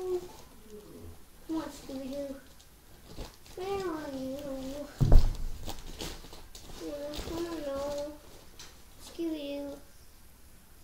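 A child's voice making drawn-out wordless vocal sounds, four short phrases that rise and fall in pitch. A single thump about five seconds in is the loudest sound.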